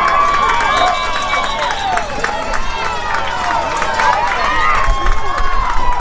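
Crowd of spectators and players shouting and calling out during a youth football play, many voices overlapping. One voice holds a long call near the end.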